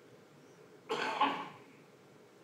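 A person's short cough about a second in, close to the microphone, against quiet room tone.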